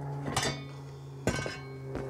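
Two metallic clinks about a second apart as a spray gun and its metal air hose fitting are handled, each with a short ring.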